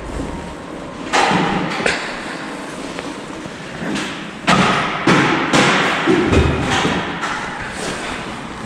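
Handling noise around a parked scooter: a series of thumps and rustles close by, the loudest cluster about four and a half to six and a half seconds in, with no engine running.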